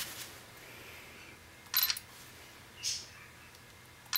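A smartphone camera's shutter click about two seconds in, then a fainter short sound about a second later, over low room noise.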